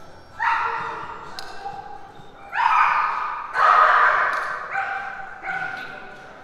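A dog barking about five times, each bark trailing a long echo in a large, hard-walled hall; the barks near the middle are the loudest.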